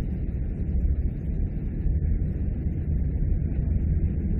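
Steady low rumble of background noise, even and unchanging, with no other event in it.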